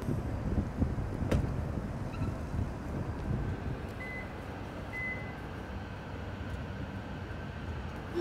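Low rumble with a couple of sharp knocks around a parked Subaru WRX, then two short, high electronic beeps about a second apart.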